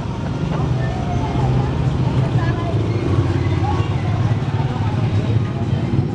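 A motor vehicle engine idling steadily, under faint background chatter.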